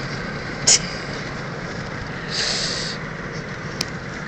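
Steady road and engine noise heard inside the cabin of a moving car, with a short cough near the start and a brief hiss a little past halfway.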